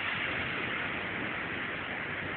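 Steady, even background hiss with no distinct event.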